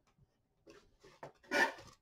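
Light handling noises of small craft supplies being picked up: a few faint clicks and short rustles, the loudest about a second and a half in.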